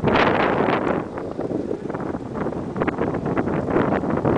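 Wind buffeting the microphone of a camera moving along at cycling speed, in uneven gusts that are loudest about the first second.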